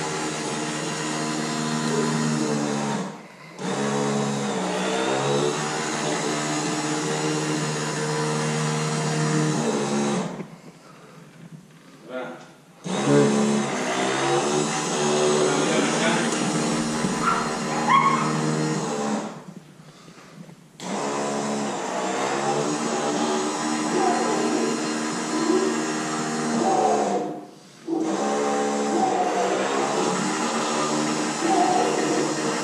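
Escalera electric stair-climbing dolly's motor whining in runs of several seconds, its pitch shifting as it takes the weight of a 600-lb gun safe being lowered down the stairs step by step. It stops briefly four times, between steps.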